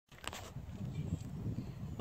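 Wind buffeting the microphone outdoors, an uneven low rumble, with a brief handling knock near the start.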